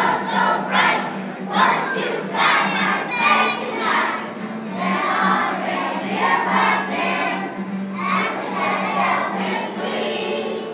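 A choir of young children singing a Christmas song together, with a steady low hum beneath the voices.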